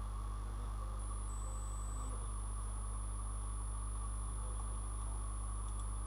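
Steady low electrical hum with a thin, constant high-pitched whine above it, and a second high tone that comes in briefly about a second in: the background noise of the recording setup, with no voice.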